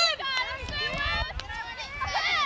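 Several high-pitched voices shouting and calling over one another across a field hockey pitch, with a sharp click about one and a half seconds in.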